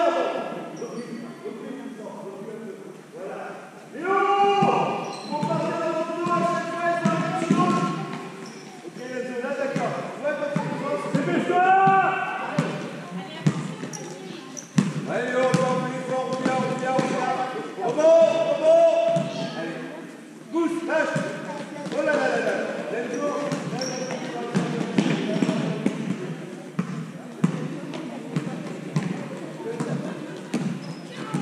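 Basketball being dribbled and bounced on an indoor sports-hall floor during play, with raised voices calling out over it in the hall.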